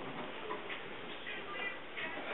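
Quiet classroom room tone with a few faint light clicks.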